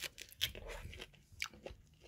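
Biting into and chewing a slice of ripe fresh pineapple close to the microphone: a run of small, faint crunching clicks.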